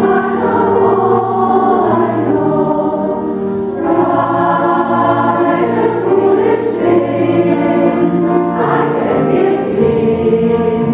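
A choir singing in several-part harmony, long held chords that shift to new ones about four seconds in and again near the end.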